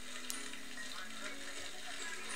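Fire hose spraying water, a steady hiss, over quiet background music with held notes and faint voices.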